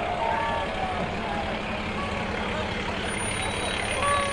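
Diesel engine of a DAF fire engine running steadily as it rolls slowly past close by, under a background of crowd voices.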